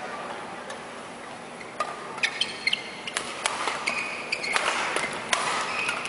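Badminton rally: rackets striking the shuttlecock with sharp clicks in an irregular exchange, starting about two seconds in, with short high squeaks of shoes on the court.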